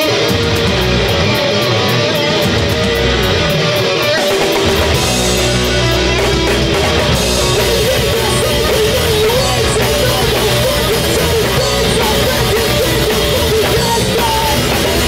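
Punk rock band playing live: an electric guitar alone at first, strummed in fast even strokes, then bass and drums come in about four and a half seconds in. A shouted vocal joins later.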